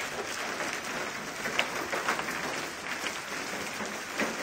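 Hailstorm: a dense, steady clatter of large hailstones striking hard surfaces, with one sharper, louder knock about a second and a half in.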